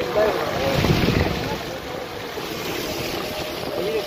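Wind rushing over the microphone of a phone held out of a moving car's window, with road noise under it and a stronger gust about a second in. Voices are faintly audible at the start and end.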